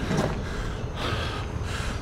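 A man breathing hard through the mouth while recovering between hard running reps, with a long breathy exhale about halfway through.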